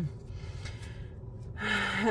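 A short pause in a woman's speech with a faint low hum, ending with a quick audible in-breath near the end.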